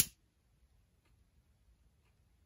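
A sharp click of a long-neck butane utility lighter's igniter at the very start, then a very faint stretch as its small flame burns.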